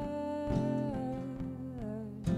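Live acoustic song: a woman's voice holds one long note, stepping down in pitch about a second in and again near the end, over strummed acoustic guitar.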